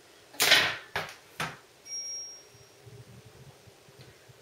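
Three quick hissing sprays from a hand spray bottle aimed at a lifted section of hair, the first the longest and loudest, followed by soft handling sounds.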